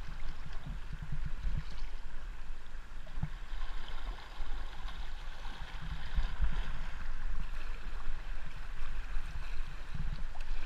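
River water running fast over a rippling, stony riverbed around a whitewater kayak as it is paddled downstream, with paddle strokes splashing in the water and irregular low thumps.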